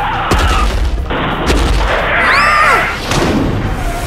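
Dubbed action sound effects: three deep booms, with a swooping, rising-and-falling pitched effect between the second and third.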